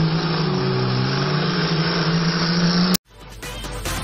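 Engines of two race cars held at the start line, running and revving, their pitch wavering up and down; the sound cuts off suddenly about three seconds in, and electronic music rises after a click.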